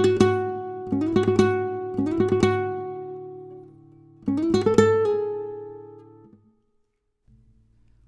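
Flamenco guitar in Rondeña tuning (D A D F♯ B E) playing four short bursts of quickly picked notes, each left to ring. The last burst fades out about six seconds in.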